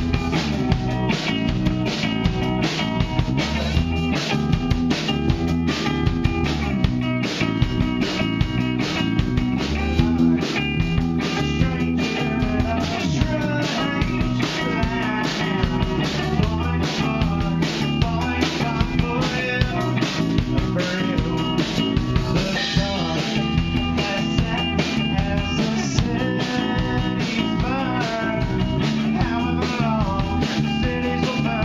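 Live rock trio playing: electric guitar, bass guitar and drum kit with a steady driving beat.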